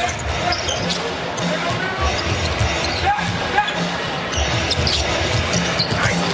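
A basketball dribbled on a hardwood court amid steady arena noise, with music playing in the background.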